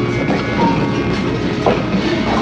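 Wheelchair wheels rolling over a hard store floor: a steady rolling noise.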